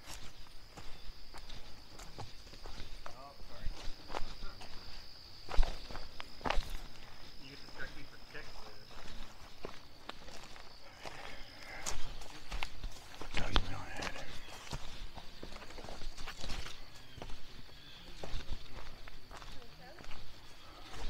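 Footsteps of a hiker walking a forest dirt trail, an irregular run of crunches and knocks on earth, leaf litter and twigs. For about the first half a thin, steady high-pitched whine sounds behind the steps.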